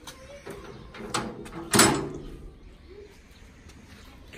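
Metal gate being opened: a knock about a second in, then a louder metal clank with a short ring a little under two seconds in.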